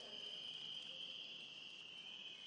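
Faint, steady high-pitched trilling of crickets.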